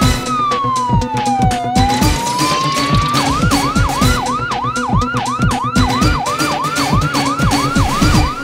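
News programme theme music: an electronic dance beat with a siren sound effect laid over it. The siren makes one slow wail down and back up, then about three seconds in switches to a fast yelp, repeating a little under three times a second.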